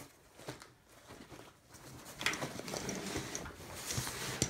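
Hands handling a nylon soft rifle case, its pouches and webbing rustling and scraping. Faint at first, the rustling picks up about two seconds in.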